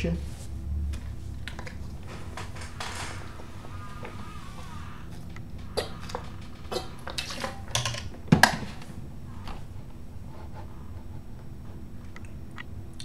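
Scattered small clicks and taps, with one louder knock about eight seconds in.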